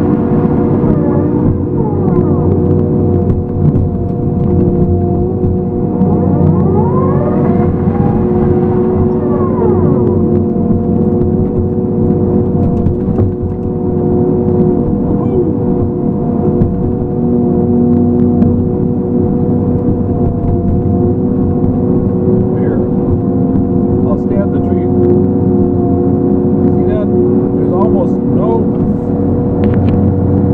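A feller buncher runs with its disc saw head spinning: a steady drone of several tones from the engine, hydraulics and saw, heard from the machine. Rising-and-falling whines come and go in the first ten seconds.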